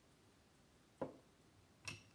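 Two short knocks from a wooden rolling pin on the board as dough is rolled out, about a second apart, the first louder.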